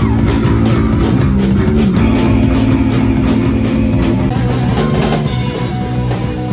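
Live rock band playing loudly: electric guitars holding chords over a drum kit, picked up by a phone in the crowd.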